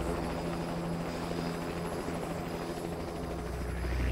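A steady low mechanical throbbing drone with a fast, even pulse, like a rotor. It plays on the music video's soundtrack after the song has ended, with a rising sweep near the end.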